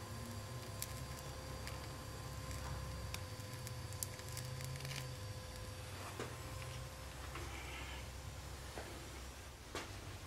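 Brazing torch flame burning with a steady low rumble as a worn-through steel hydraulic line is brazed shut.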